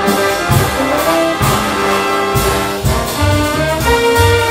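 Big band jazz ensemble playing: trumpets, trombones and saxophones hold sustained chords over bass and drums, with drum hits throughout.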